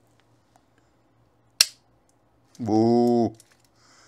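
Toy cap-gun revolver firing a single paper roll cap: one sharp crack about a second and a half in. A drawn-out vocal exclamation follows soon after.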